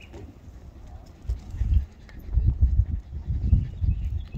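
Wind buffeting the microphone in irregular gusts, a low rumble that starts about a second in.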